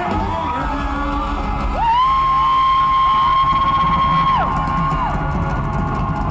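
Live rock concert recorded from the crowd: the band playing with crowd noise. About two seconds in, a long high note slides up into place, holds for about three seconds and then drops away.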